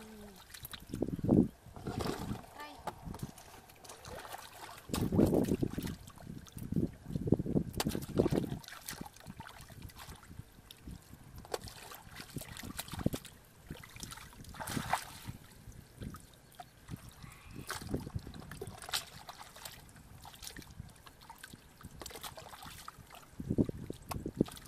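Hands splashing and sloshing in shallow muddy paddy water while groping for fish: irregular splashes and wet slaps, heaviest about five to eight seconds in, then lighter stirring of the water.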